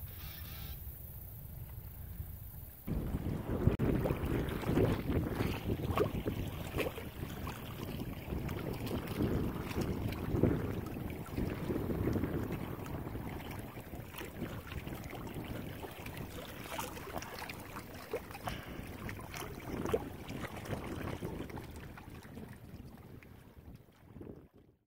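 Wind gusting across the microphone beside a choppy lake, with water lapping at the shore. It starts abruptly about three seconds in and fades near the end.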